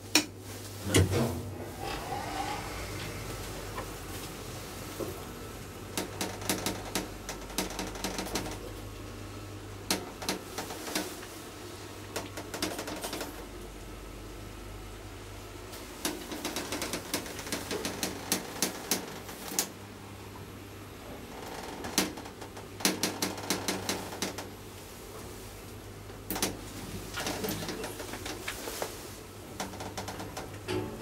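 A 1992 KONE traction elevator car in motion: a steady low hum runs under repeated bursts of rapid clicking and rattling that come every few seconds.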